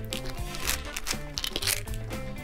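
Background music, with a few short crinkling clicks over it.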